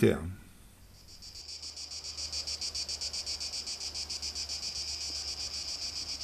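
Cicadas singing: a high, rapidly pulsing buzz that fades in about a second in and then holds steady.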